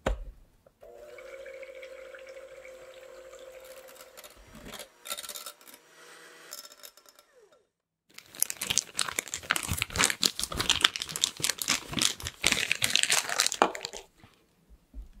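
An electric hand mixer hums steadily in batter for about four seconds after a click. After a short silence comes a long, busy stretch of close crackling, squishing handling noise with no motor hum.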